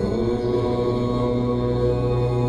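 Devotional background music: a chanted mantra in long held notes over a steady low drone.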